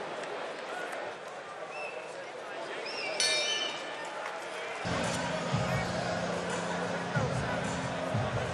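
Arena crowd noise, with a short high whistle-like tone about three seconds in as the round's clock runs out. Then, about five seconds in, arena music with a steady low bass note and beat starts up.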